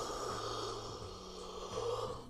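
A long, breathy exhale from a person close to the microphone, lasting about two and a half seconds and swelling near its end, over faint background music.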